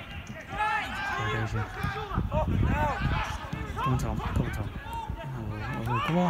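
Several voices shouting and calling out at once at a football match, players and spectators overlapping in rising and falling cries.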